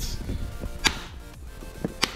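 A sharp click about a second in, then a fainter tap near the end: a kitchen knife being picked up and handled on a granite countertop beside a plastic meal tray.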